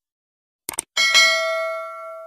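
Sound effect of a subscribe animation: a quick double click, then about a second in a single bell ding that rings on and fades slowly.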